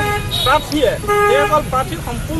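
A man speaking in Assamese into reporters' microphones, over a steady low background rumble.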